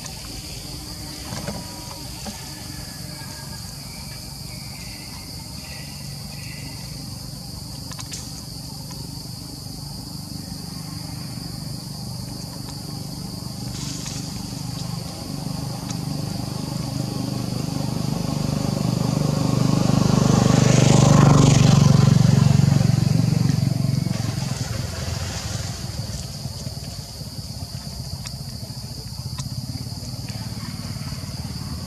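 A motor vehicle passing by, its low engine sound building slowly to a peak about two-thirds of the way through and then fading away, over a steady high-pitched drone of insects.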